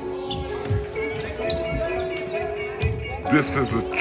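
A basketball bouncing on a wooden gym floor with irregular thumps, and voices echoing in the hall joining about three seconds in. A few held music notes linger in the background.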